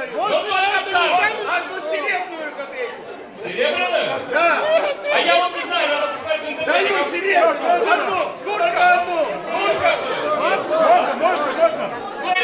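Speech only: men talking over one another, one of them into a handheld microphone, with no other sound standing out.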